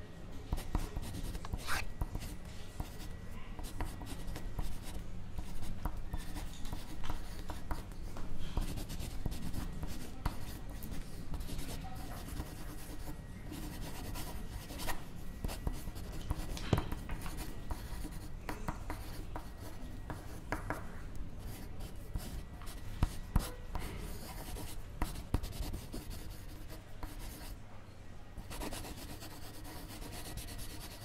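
Pencil writing on paper close to the microphone, in many short strokes with small taps throughout.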